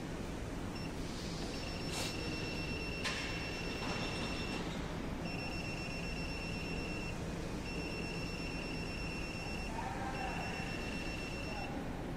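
Car AC recovery and recharge machine charging refrigerant gas into the system: a steady machine hum with an electronic buzzer beeping in four pulsing stretches of about two seconds each, starting about a second and a half in.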